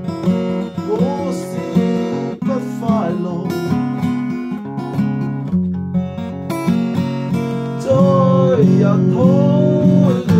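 Acoustic guitar strummed in a steady rhythm, with a voice carrying a wavering melody over it. It grows fuller and louder from about eight seconds in.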